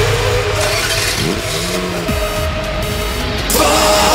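Hard electronic dance track playing loud, in a breakdown carrying a sampled car engine revving, its pitch sweeping up and down. The full beat comes back in about three and a half seconds in.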